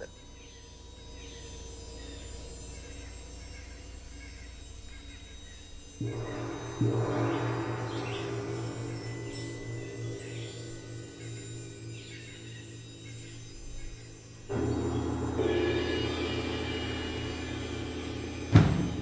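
Percussion ensemble recorded outdoors: a quiet, airy stretch with faint high chirps, then about six seconds in a sustained low rumble of rolled percussion swells in. It fades, and a second loud entry comes in near fifteen seconds.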